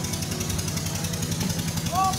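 Inboard motor of a large wooden passenger bangka (motorized boat) running with a rapid, even chugging as it ferries people across floodwater.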